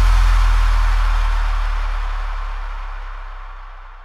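The last note of an electronic dance music track ringing out: a deep sustained bass note with a high, hissy wash above it, fading steadily toward silence.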